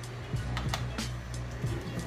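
Background music with a steady low bass line, with a few faint light clicks and rustles from a small packet being handled.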